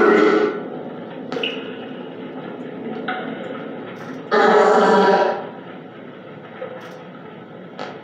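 Spirit box sweeping through radio stations: steady static chopped by abrupt jumps, with a louder, voice-like fragment for about a second near the middle.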